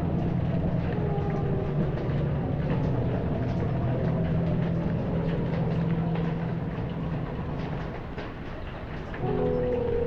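Rain pouring and tapping on a window, with thunder rumbling in the distance and music from a television's commercials playing underneath. A new tune from the TV starts about nine seconds in.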